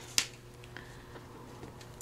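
A single sharp click as a large metal paper clip is pushed onto a thick stack of paper tags, followed by a few faint small ticks of handling.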